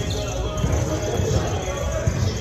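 A volleyball being hit and bouncing on the hardwood floor of a large gym, with players' voices.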